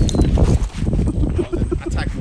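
Quick, irregular low thumps with rustling, as of someone running along a trail with a handheld camera, the camera's microphone picking up the jolts of each stride.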